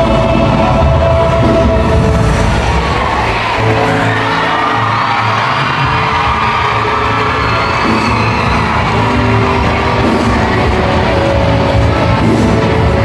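Live stage music played loud through an arena's loudspeakers, running steadily with held notes.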